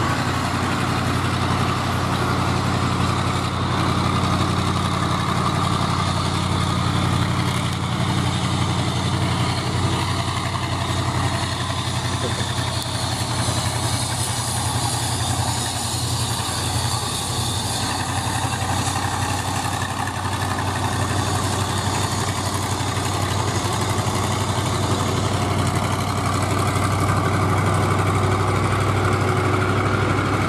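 Heavy diesel trucks going by on a highway: a steady low engine drone with tyre and road noise, holding at much the same level throughout.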